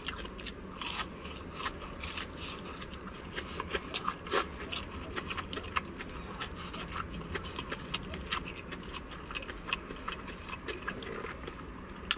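Close-up crunching and chewing of KFC Extra Crispy fried chicken: the breading crackles in many short, sharp snaps as it is bitten, chewed and pulled apart.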